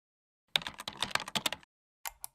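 Computer keyboard typing: a quick run of keystroke clicks lasting about a second, starting about half a second in.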